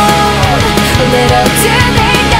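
Loud rock song from a studio recording: a full band with drums and cymbals under a melody line that slides between notes.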